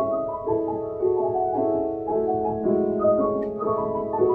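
Piano and electric guitar playing a melodic passage of layered, held chords live, the notes changing about twice a second.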